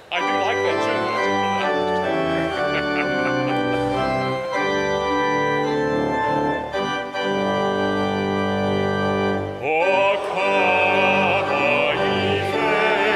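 Church organ playing the introduction to a congregational hymn in sustained, changing chords, starting suddenly. A wavering singing voice joins near the end.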